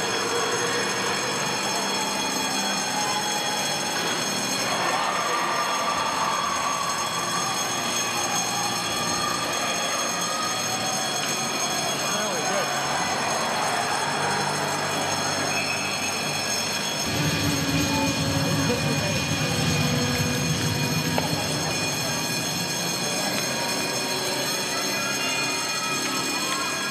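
Ice rink game sound during youth hockey play: skate blades scraping and carving on the ice, with scattered voices and a steady high-pitched hum over it. A louder low rumble comes in from about two-thirds of the way through and lasts a few seconds.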